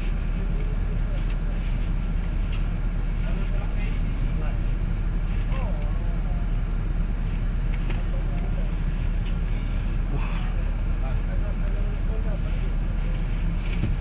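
Steady low rumble of a stationary intercity bus idling, heard from inside its cabin, with faint voices.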